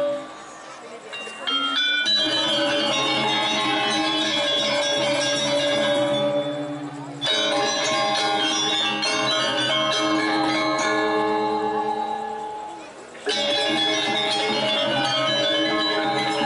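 Balinese gong kebyar gamelan playing: bronze metallophones, gongs and kendang drums in loud ringing ensemble passages. The passages stop and start abruptly, breaking off just after the start, bursting back in about two seconds in, and again after fading out around seven and thirteen seconds in.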